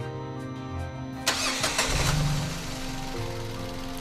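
Car engine being cranked by the starter and catching about a second in, then settling to a steady idle, over background music.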